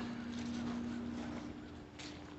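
Quiet footsteps of a person walking on grass. A faint low steady hum fades out about halfway through.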